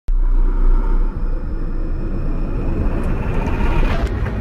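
Cinematic logo-intro sound effect: a loud, deep rumble that starts suddenly, with a whooshing riser swelling toward the end.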